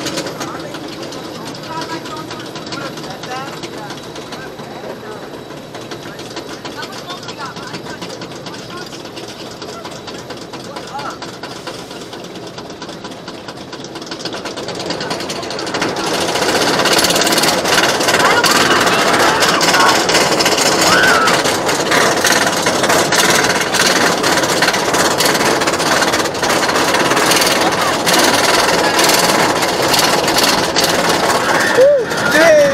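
Wildcat's Revenge roller coaster train running on its chain lift hill: a steady rattling mechanical clatter that becomes much louder and denser about halfway through as the train climbs.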